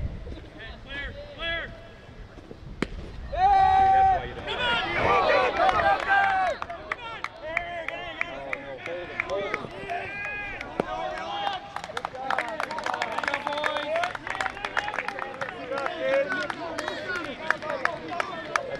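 A single sharp crack about three seconds in, a baseball bat hitting the ball, followed at once by spectators shouting and cheering, with scattered clapping later on.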